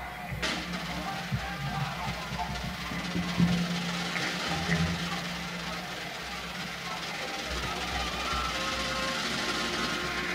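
A small band of piano, guitar, bass and percussion playing the opening of a 1970s pop song, with sustained notes and a sharp percussive hit about half a second in.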